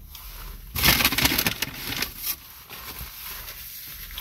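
Paper rustling as a sandwich wrapper or napkin is handled close by: a loud crinkly burst about a second in, then a few softer rustles.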